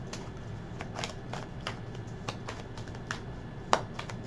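A deck of divination cards shuffled by hand: irregular soft flicks and slaps of card stock, with one sharper snap near the end.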